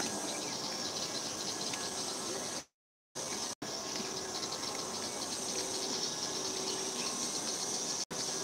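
A steady, high-pitched insect chorus with a fast pulsing rhythm, broken by two brief dropouts to silence about three seconds in.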